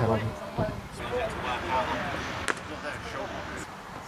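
Voices of cricketers talking and calling across an open field, heard faint and at a distance, with one sharp click about halfway through.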